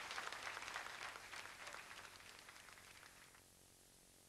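Faint audience applause at the end of a song, fading out about three and a half seconds in.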